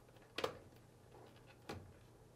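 Two faint short clicks, one about half a second in and a softer one near the end: a small plastic wiring-harness connector being handled and plugged into its socket on a washing machine's control board.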